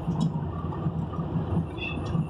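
Steady engine hum and tyre-on-road rumble of a moving vehicle, heard from inside the cabin.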